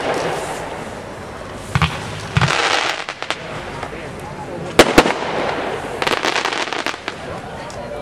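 A 32-shot consumer fireworks cake firing off. Sharp bangs come about two seconds in, one followed by a brief hiss, then two loud cracks close together about five seconds in. A run of rapid crackling follows about six seconds in.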